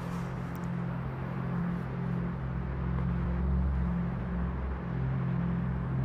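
Low, sustained drone of a dramatic background score, holding steady pitches with no beat.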